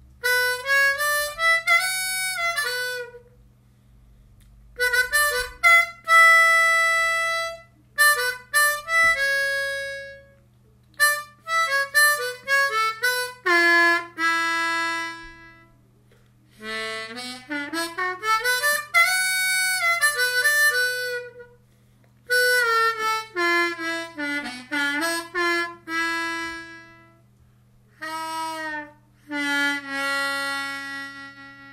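Seydel 1847 Classic diatonic harmonica in A played slowly in third position (B minor), in short single-note phrases separated by brief pauses. Some notes are bent, with a long upward slide in pitch a little past the middle.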